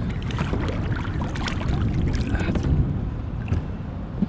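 Steady wind rumble on the microphone, with short sharp splashes of water as a hand grabs a lake sturgeon by the tail at the surface.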